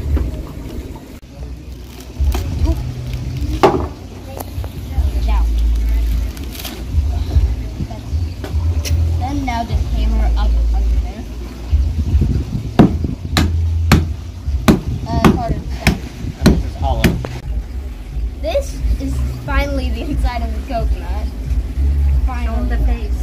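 Hammer blows on a coconut: sharp single knocks every few seconds, then a quicker run of strikes in the second half, over a low rumble. Children's voices come between the knocks.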